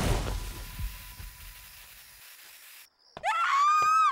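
Cartoon sound effects: a heavy crash as a large robot-like body slams to the ground, fading out over about three seconds. Near the end comes a short high-pitched scream that rises and then falls in pitch.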